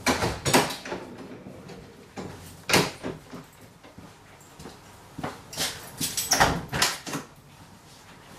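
Sharp door-like knocks and clatters in three clusters: at the start, about three seconds in, and again from about five to seven seconds in.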